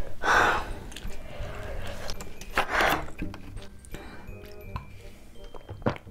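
Background music with a person's two loud, sharp breaths, panting from the burn of very spicy noodles: one near the start and one about three seconds in.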